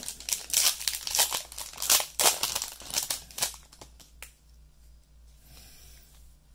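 A Throne of Eldraine booster pack's wrapper being torn open and crinkled, a quick run of loud rustles for about the first three and a half seconds, then only faint handling of the cards with a small click.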